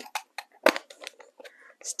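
A few light clicks and taps of a plastic ink pad case being handled and its flip lid opened.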